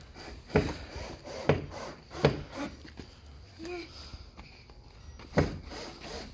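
Four sharp knocks: three about a second apart in the first half, and one more near the end.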